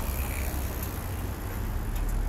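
Street traffic noise: a steady low rumble of passing cars.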